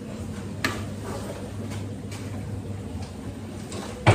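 A steady low hum with a sharp click about two-thirds of a second in and a few fainter ticks after it.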